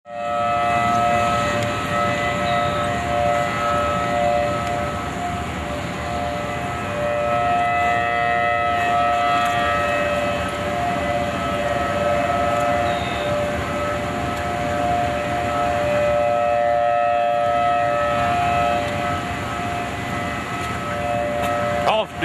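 Outdoor tornado warning sirens sounding: several steady held tones together, swelling and easing slowly in loudness, over a low rushing noise.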